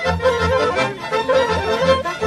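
Romanian folk dance music from a folk band: a quick, ornamented melody over a steady bass beat.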